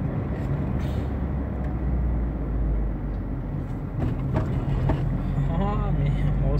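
Steady low rumble of a car's engine and tyres on the road, heard from inside the moving car's cabin. A voice starts just before the end.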